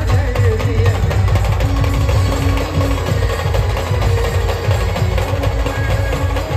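A live Maharashtrian street band playing loudly, with heavy, rapid drum beats under sustained melody notes.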